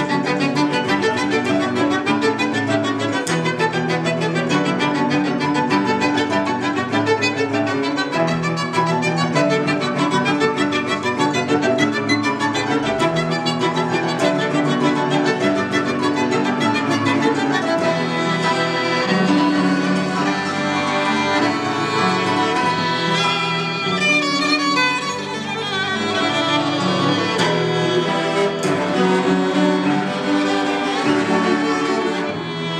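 Violin, cello and piano playing a chamber piece together, with sustained bowed notes running on, briefly softer about 25 seconds in.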